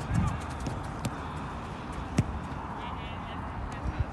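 Footballs being kicked and dribbled on artificial turf: a handful of sharp, separate thuds of foot on ball, over faint distant voices.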